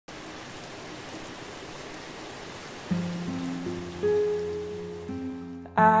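Steady rain hiss, then about three seconds in acoustic guitar notes begin, plucked one after another and left to ring, opening a slow, gentle song.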